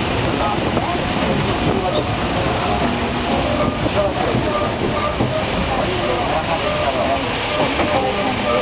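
Steady rumble of a moving vehicle with people's voices chattering over it.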